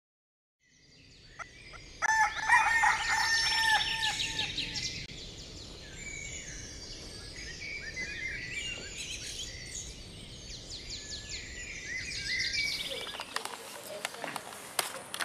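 A rooster crows once, loudly, about two seconds in, over a chorus of small birds chirping and trilling, typical of morning ambience.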